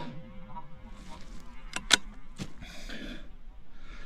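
Quiet moments just after a rifle shot: the shot's echo fades at the start, the rifle is handled with a few sharp clicks about two seconds in, and then comes a short breath.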